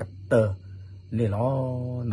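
A man's voice speaking: one short syllable, then a single syllable drawn out and held at an even pitch for about a second near the end.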